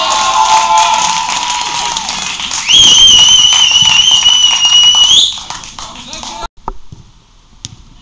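A shout, then a referee's whistle blown in one long, slightly wavering blast of about two and a half seconds that stops abruptly.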